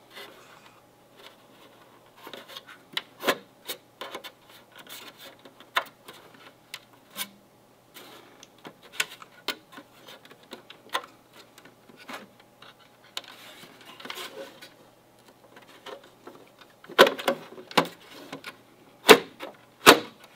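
Plastic scraping, rubbing and clicking as the Verizon CR200A gateway's internal frame is slid back into its outer cover, with the light guides catching along the way. A cluster of louder knocks comes near the end as the frame seats.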